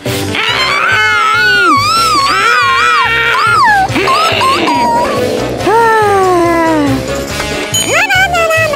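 Cartoon background music with a steady beat, under high, wavering, gliding cartoon character vocalizations: wordless whimpering and squealing cries.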